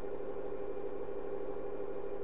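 Steady mechanical hum at an even level, holding a few constant pitches, like a small motor or fan running.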